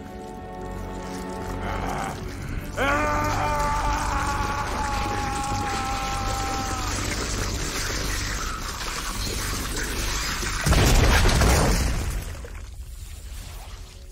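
Dramatic film score, with a long pitched wail over it from about three seconds in. About eleven seconds in comes a loud burst as the vampire's swollen body explodes, a film sound effect, dying away over a second or two.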